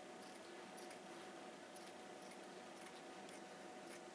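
Faint, short snips of scissors cutting landscaping weed-block fabric, about two a second, over a steady low hum.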